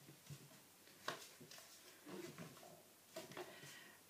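Near silence: quiet room tone with a few faint, soft clicks, the clearest about a second in.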